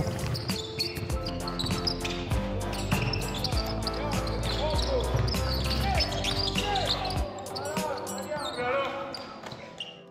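Basketballs bouncing and sneakers squeaking on a hardwood court during a practice scrimmage, with players' voices, over background music that fades out near the end.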